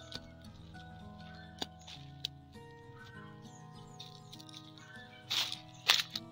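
Background music of long held notes. There are a few sharp clicks, and near the end two short, louder scraping noises.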